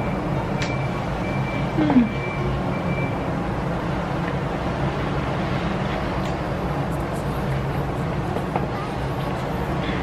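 Steady low background rumble with no clear events, and a brief short murmur about two seconds in.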